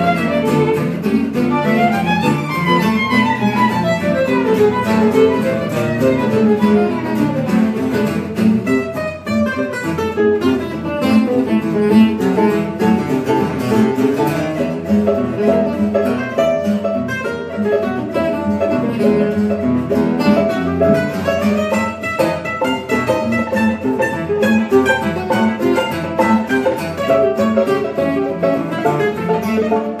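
Gypsy jazz waltz played live on violin and acoustic guitars, with chugging guitar rhythm under fast melodic runs that sweep up and down, once in the first few seconds and again past the twenty-second mark.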